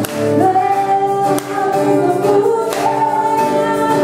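Two women singing a duet to a strummed acoustic guitar, on long held notes.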